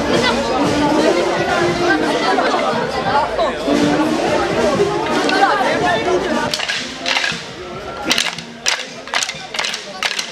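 Dense crowd chatter from a large gathering. About six seconds in it thins, and a string of sharp, irregular snaps begins, coming about two or three a second near the end.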